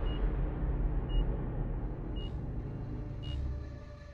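Trailer sound design: a low rumbling drone with a short, high-pitched beep repeating about once a second, fading away toward the end.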